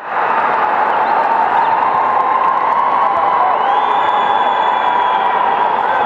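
Spectators cheering and shouting in a steady mass of crowd noise. A little past halfway, a high tone rises and holds for about two seconds over the crowd.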